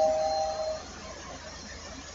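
Bell sound effect, its ring dying away during the first second, then a low, quiet background.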